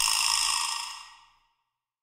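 Vibra-slap: one sharp strike followed by a buzzing rattle that dies away over about a second and a half, played back with a little reverb added.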